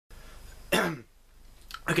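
A man coughs once, briefly, to clear his throat, about a second in.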